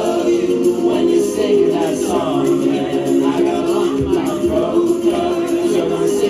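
Karaoke backing music playing through a PA speaker, with several voices singing along over held chords.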